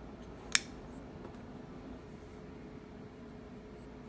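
A single sharp metallic click about half a second in: the Chris Reeve Sebenza 21 folding knife's blade swinging open and its titanium frame lock snapping into place. Otherwise faint room tone with a low steady hum.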